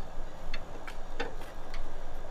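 A few sharp, unevenly spaced metal clicks from a hand tool turning the tension adjustment screw on a weight distribution hitch as it is slowly tightened.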